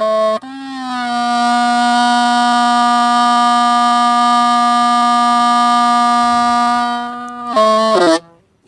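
Hmong raj, a long bamboo flute, played solo with a reedy, harmonic-rich tone: a few quick notes, then one long low note that settles with a slight dip in pitch and is held for about seven seconds, then a quick run of notes near the end.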